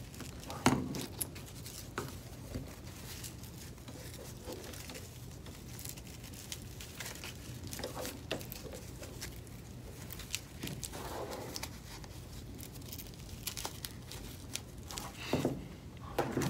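Faint rustling and scattered light clicks of hands fitting Tiger Fins abrasive strips into the nylon bristles of a water-fed brush, over a low steady hum.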